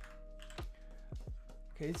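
Computer keyboard keys clicking a few separate times over quiet lo-fi background music.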